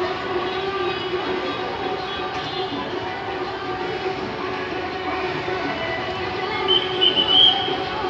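A steady drone of several held pitches runs throughout, with a brief, high, wavering tone near the end.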